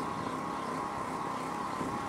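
Steady road traffic noise, with a thin steady tone running through it.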